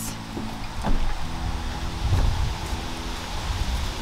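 Wind on the microphone, an uneven low noise that swells and fades, with a few faint rustles and taps from a bouquet of cut-flower stems being handled.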